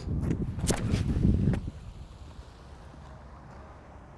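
A disc golf backhand throw off a concrete tee pad: rumbling, wind-like noise with scuffing steps and a couple of sharp clicks over the first second and a half as the thrower drives through and releases. Then quieter outdoor background.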